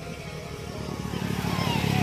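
A motor vehicle's engine running with a low, even rumble that grows louder from about a second in.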